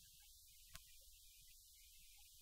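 Near silence: low steady room hum, with a single faint click about three quarters of a second in.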